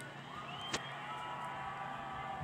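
Racetrack ambience from a TV broadcast, picked up off the set's speaker: a steady faint noise of crowd and trucks with a thin engine-like tone rising then holding, and a single click about three quarters of a second in.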